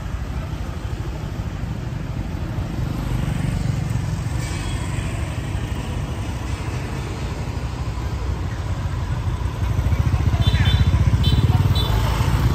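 Motorbike and scooter traffic in a narrow street: a steady low engine rumble, with one scooter passing close and louder near the end.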